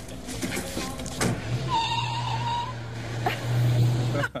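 A car pulling away: its engine runs with a steady low hum from about a second in, with a brief high whine in the middle and a couple of sharp clunks.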